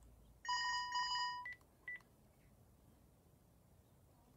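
Electronic ringtone from a computer as a video call connects: a stuttering ring about a second long, then two short beeps.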